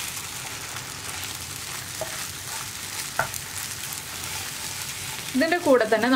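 Beaten egg frying with a steady sizzle in a non-stick pan while a wooden spatula stirs it, with two light ticks about two and three seconds in.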